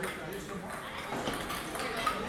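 Table tennis ball knocking off the paddles and the table during a rally: several sharp clicks at uneven spacing, over a background murmur of crowd chatter.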